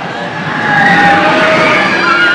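Roller-coaster car of the RC Racer half-pipe coaster rushing along its U-shaped track, the sound swelling and rising in pitch about half a second in.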